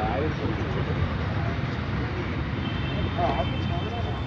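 A faint voice on a phone call, heard through the phone's speaker, speaking briefly near the start and again about three seconds in, over a steady low rumble of background noise.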